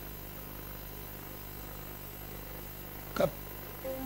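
Steady low electrical hum and background noise, with one brief murmur of a voice about three seconds in.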